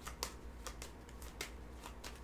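Tarot cards being shuffled and handled by hand, with about four short, sharp card snaps spaced roughly half a second apart.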